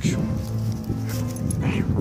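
A dog making a few short vocal sounds, with a man laughing at the start and steady background music underneath.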